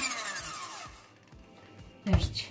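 Electric hand mixer's motor spinning down after being switched off, its whine falling in pitch over about a second and fading out, with soft background music under it.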